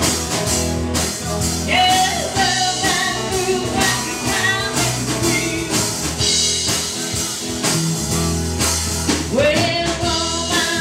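Live band playing a song: a woman singing over acoustic guitar, electric guitar, electric bass and drum kit.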